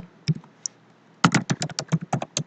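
Typing on a computer keyboard: two or three separate key taps, then a quick run of keystrokes starting a little over a second in.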